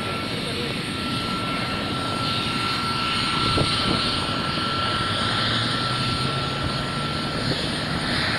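A pair of Mi-2 helicopters flying in formation, their twin turboshaft engines and main rotors making a steady drone that swells slightly about halfway through.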